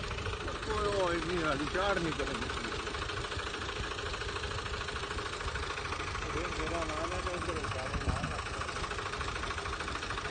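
Farm tractor's diesel engine running steadily under load as it pulls a bund-making plough through loose, freshly ploughed soil. Faint voices come through briefly about a second in and again about two-thirds of the way through.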